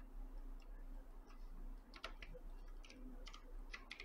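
Faint, scattered clicks from a computer mouse and keyboard, more of them in the second half.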